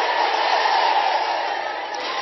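A large outdoor crowd shouting and cheering together, a dense wash of many voices with no single voice standing out. It swells at the start and eases slightly toward the end.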